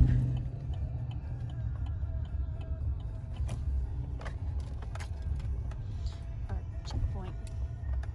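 Low, steady rumble of a pickup truck's engine and road noise heard from inside the cab as it rolls slowly along, with a few faint, irregular clicks.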